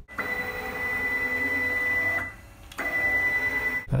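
Stepper motor driving the CNC router's gantry along its ballscrew: a steady whine with running noise, which stops for about half a second a little past two seconds in and then starts again.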